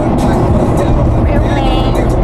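Steady low rumble of a car driving at freeway speed, heard from inside the cabin. A voice comes in briefly near the end.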